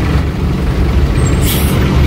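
Road traffic heard from the open bed of a pickup crawling in a traffic jam: a steady low rumble of engines, with a short hiss about a second and a half in.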